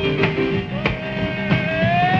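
1950s rock and roll band playing: boogie piano and drums keep a steady beat. A long held note begins under a second in and bends slowly upward.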